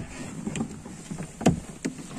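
Car cabin noise while driving, a steady low rumble of engine and tyres, with two short knocks in the second half.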